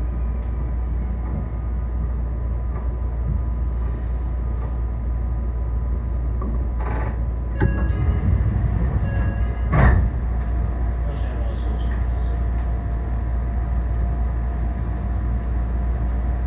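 Meitetsu electric train heard from inside the front cab: a steady low running rumble and hum as it slows and comes to a stand. A few short sharp sounds come about seven seconds in, and the loudest about ten seconds in.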